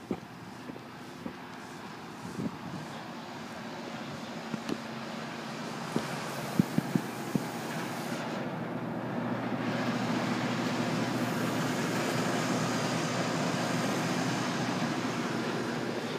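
A steady machine-like drone that grows louder over the first ten seconds and then holds, with a few sharp clicks about six to seven seconds in.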